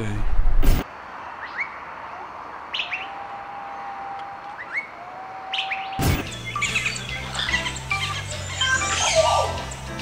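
Birds chirping over a faint outdoor hiss: a few short rising calls and two longer steady whistled notes, after a brief loud burst at the very start. About six seconds in, music with a steady bass line takes over.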